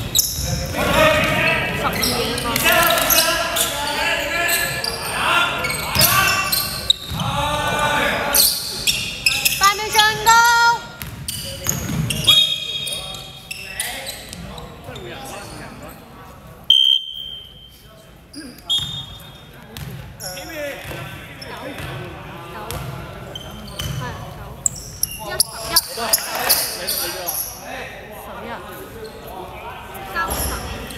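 Indoor basketball game: a basketball bouncing on the hardwood court, sneakers squeaking and players' voices calling out, echoing in a large hall. The voices and knocks are busiest in the first half and thin out after about twelve seconds, with a few short high squeaks in the middle.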